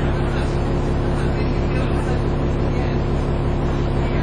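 Dennis Trident 2 double-decker bus engine idling, heard inside the passenger saloon: a steady hum with an even low throb.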